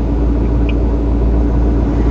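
Steady low rumble of a running car heard from inside its cabin, with a faint steady hum above it.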